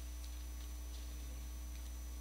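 Steady low electrical hum of a microphone and amplifier system, with a thin steady high whine above it and a few faint ticks.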